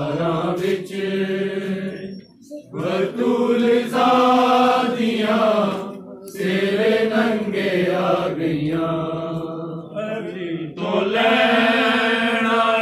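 Men's voices chanting a noha, a Shia lament, in long drawn-out sung phrases with short breaks about two, six and ten seconds in.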